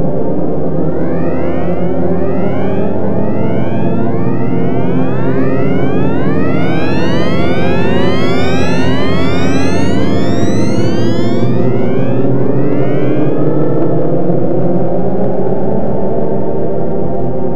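Electronic drone music from the DIN Is Noise software synthesizer: a dense sustained chord with many overlapping tones sliding upward in pitch. The glides build up to the middle, then thin out and stop shortly before the end while the drone carries on.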